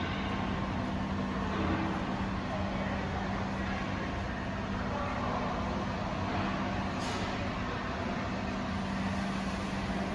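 Steady industrial machinery hum: a constant low tone over an even wash of mechanical noise, with a faint tick about seven seconds in.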